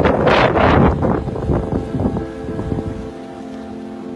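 Storm wind gusting on the microphone over rough sea, with steady background music underneath; the wind noise fades out about three seconds in, leaving only the music.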